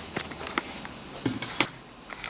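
A few light clicks and taps of handling as a thin silver-coated plastic sheet is moved and set down on a workbench.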